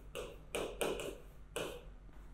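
A pen scratching and tapping on an interactive display screen as marks are drawn: about four short, faint strokes within the first second and a half.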